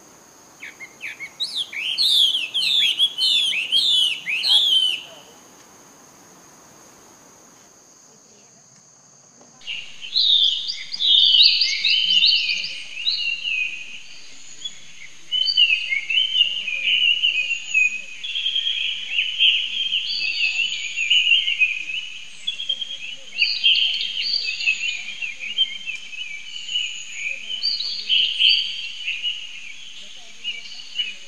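Wild birds chirping: a quick run of about seven falling notes in the first few seconds, then after a short lull a dense chorus of many birds chirping without a break. A steady high insect whine runs underneath.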